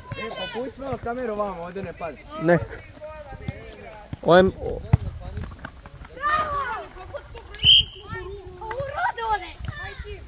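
Children's voices calling and talking over a kids' football game on an outdoor court, with a few short knocks.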